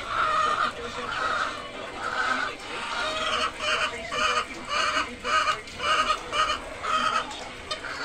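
A caged flock of white laying hens clucking. The calls come from many birds at once, and from about three seconds in they settle into short calls repeated about twice a second.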